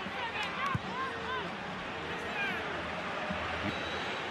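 Football match sound: a steady stadium crowd noise with several short shouts from voices on or near the pitch. There is a single low thud of the ball being kicked about a second in.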